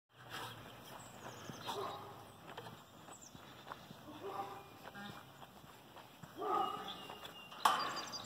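Sheep bleating: three short calls about two seconds apart, the last the loudest, with faint knocks and rustles between them.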